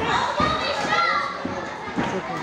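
Crowd of children shouting and calling out, many voices overlapping in a large hall.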